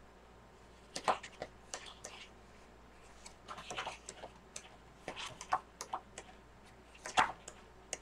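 Sheets of a scrapbook paper pad being flipped through: a scattered series of short paper rustles and snaps at irregular intervals.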